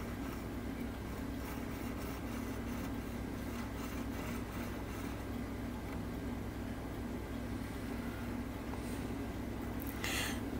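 Steady low electrical hum of room equipment, with faint, soft scratching from a cotton bud being rubbed along a tiny brass anchor chain.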